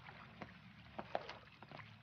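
Faint, irregular footsteps of several people walking on a paved path, a few sharp scuffs and taps over a low outdoor hiss.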